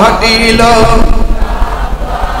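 A man's voice singing a passage of a Bengali waz sermon into a microphone over a PA, in a slow chant. He holds wavering notes for about the first second, then the sound drops to something quieter and less distinct.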